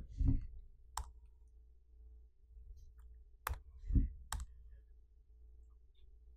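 Three separate sharp clicks, about a second in, three and a half seconds in and just after four seconds, with a soft low bump just before the last one, over a faint steady hum.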